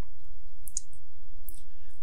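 A steady low hum with two faint, short clicks, about a second in and again about half way through.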